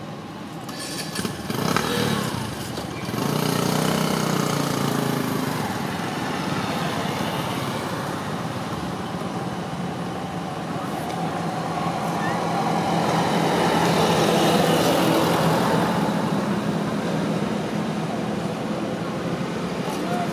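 A motor vehicle's engine running steadily, swelling from a few seconds in and strongest past the middle, with voices in the background.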